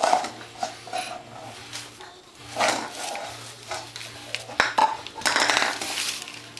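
Light knocks and clatter of plastic cups tapped and dropped on a wooden floor by a crawling baby, with wrapping paper rustling under her. A short baby vocal sound near the end.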